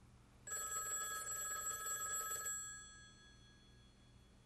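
A telephone's bell ringing once: a rapid metallic trill that starts about half a second in, lasts about two seconds, and then dies away.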